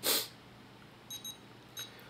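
Futaba FASSTest 14-channel radio transmitter giving three short high beeps, one for each step of its scroll dial as the landing flap trim value is lowered from 106 to 103. A short hissing burst sounds at the very start.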